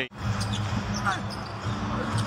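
Live basketball game sound in an arena: a basketball being dribbled on the hardwood court over a steady crowd murmur in the large hall.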